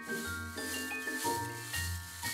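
Bristle brush scrubbing, a steady shaking hiss of a cartoon sound effect, over soft background music with held notes.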